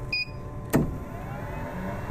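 UP Box 3D printer powering up: a last short high beep just after the start, a sharp click a little under a second in, then a faint rising whine as something inside spins up, with a low steady hum setting in near the end.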